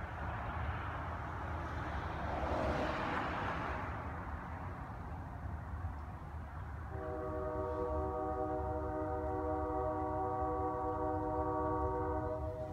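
A rushing rumble swells and fades over the first few seconds. From about seven seconds in, a train horn sounds one long steady chord of several notes, held for about five seconds.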